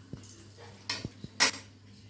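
A few short clinks and knocks of dishes being handled, the loudest about one and a half seconds in, over a faint steady low hum.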